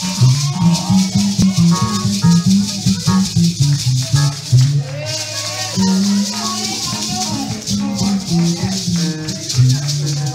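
Live church band music: a bass line of short, stepping low notes over a steady high shaker-like hiss, with a brief lull about halfway through.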